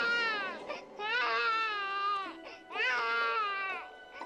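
A baby crying: three wails, each about a second long, rising and then falling in pitch, with short breaths between.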